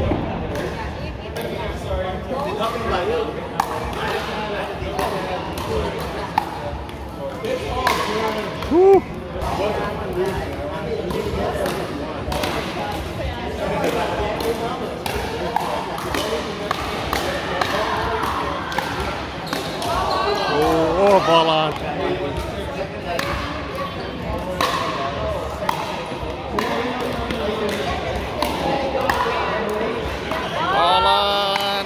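Pickleball rally: a hard plastic ball is struck back and forth by paddles in a run of sharp, irregular hits and bounces on the wooden gym floor. Players' voices go on throughout, loudest about nine and twenty-one seconds in.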